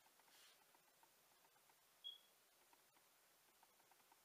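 Near silence: faint room hiss with faint small ticks, and one brief high chirp about two seconds in.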